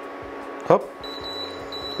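Portable induction hob beeping in a high tone, with short breaks, for about the last second as its power is raised to bring the pot to the boil, over its faint steady electrical hum.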